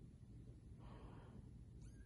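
Faint, breathy cry from a two-week-old Bengal kitten about a second in, followed by a thin high squeak near the end, over a low steady hum.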